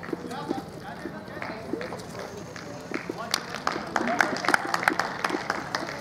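Background voices from the crowd and players at an outdoor cricket ground, with scattered sharp clicks that come thickest about three to five seconds in.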